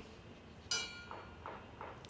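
A small memorial bell struck once with its cord, ringing briefly and fading: the toll given for a fallen firefighter after his name is read at roll call.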